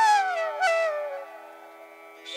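Flute melody, a note sliding downward and trailing off a little over a second in, over a steady drone.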